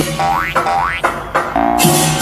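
Cartoon 'boing' jump sound effects: two quick upward-sweeping boings in the first second, then a shorter rising tone about halfway through, over a bouncy music track.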